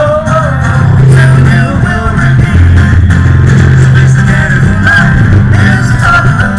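Live band music played loud over a stage PA system, with held bass guitar notes under guitar and a wavering melody line. The sound is overloaded and distorted from the microphone being close to the speakers.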